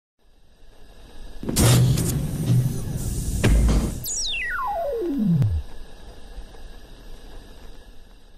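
Synthesized sound design for an animated logo intro: a swell builds up to two loud hits, then a single pitch sweep glides smoothly down from very high to very low over about a second and a half. It fades to a faint low hum.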